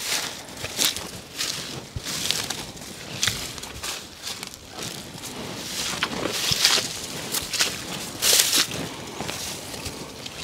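Footsteps through tall wet grass and dry brush: an irregular swishing and rustling of stalks underfoot, with a few louder swishes a little past the middle.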